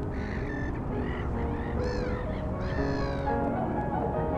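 A bird cawing a few times, each call a short arched cry, over soft background music.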